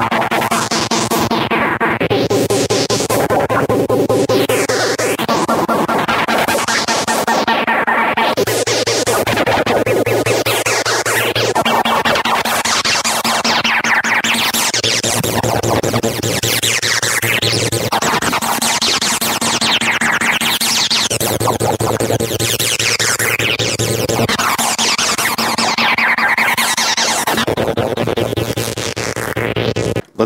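Roland TB-303 bass synthesizer line run through a MOTM-120 Sub-Octave Multiplexer synth module, which stacks square waves an octave and more below the input and cross-modulates them: a loud, distorted electronic sequence with bass notes changing about every two seconds under a sweeping sound that rises and falls.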